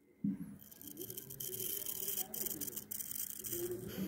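Safety razor scraping through lathered long hair on the scalp in repeated rasping strokes, starting shortly after a brief silence.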